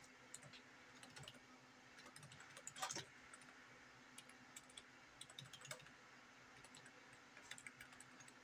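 Faint typing on a computer keyboard: irregular keystroke clicks, with a louder clatter of keys about three seconds in.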